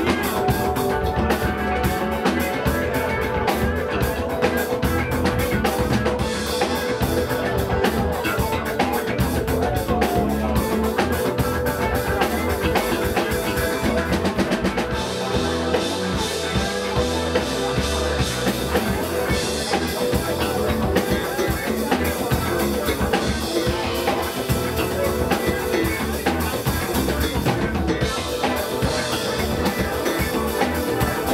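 Live band playing, drum kit keeping a steady beat under bass and guitar.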